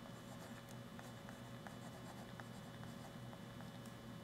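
Faint ticks and scratches of a pen stylus writing on a tablet, coming as small irregular taps with the strokes.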